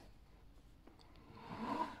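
Quiet room tone with a faint tick about a second in, then a soft vocal murmur rising near the end.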